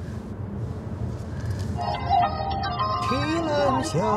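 Low, steady road noise inside a moving car, then a Peking opera recording starts on the car's audio about halfway through: accompaniment first, with a singer's voice gliding in near the end.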